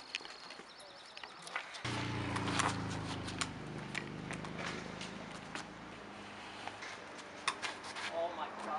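A steady low motor hum starts suddenly about two seconds in and fades out near the end, with scattered sharp clicks and knocks throughout.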